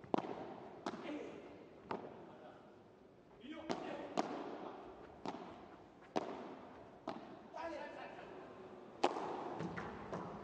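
Padel rally: sharp pops of the ball off racket, court and walls, coming about once a second, over a faint arena murmur.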